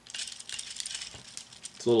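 Plastic parts of a Transformers Ramjet action figure rattling, with small clicks, as a leg that is a little tight is unpegged and lifted by hand.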